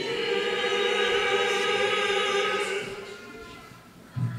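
Orthodox church choir singing unaccompanied in several held parts, the chord dying away about three seconds in.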